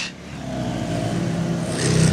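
2006 Kawasaki Ninja ZX-10R's inline-four engine running, then revving up and getting louder near the end as the bike pulls away.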